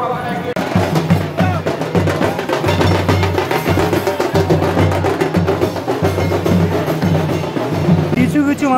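Procession drummers beating large bass drums and a smaller side drum in a fast, steady rhythm, starting suddenly about half a second in, with crowd voices underneath.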